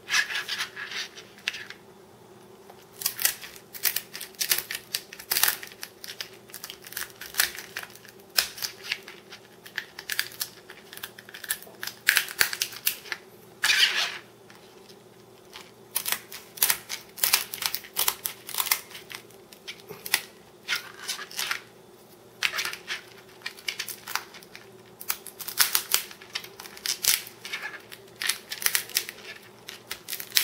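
Kitchen shears snipping through raw lobster tail shells: repeated crisp crunching cuts in irregular clusters, the shell cracking with each snip.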